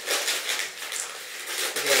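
Grey plastic courier mailer bag crinkling and rustling in irregular bursts as it is cut into and pulled open by hand.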